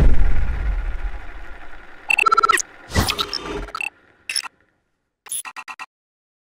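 Sound-design sting for an animated logo: a deep boom whose rumble dies away over about two seconds, then several bursts of short, glitchy electronic stutters and blips with gaps of silence between them, the last a rapid stutter near the end.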